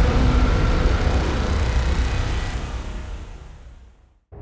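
A deep, noisy rumble like a trailer sound effect, strongest in the bass. It fades away over the last second and a half and ends in silence.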